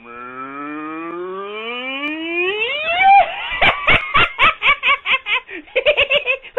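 Cartoonish cow moo sound effect for a 'Mad Cow' logo: the moo glides steadily up in pitch for about three seconds, then breaks into rapid, laugh-like syllables about four or five a second.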